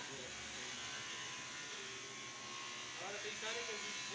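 Faint, distant voices of people talking over a steady background hiss and buzz, with the voices a little clearer about three seconds in.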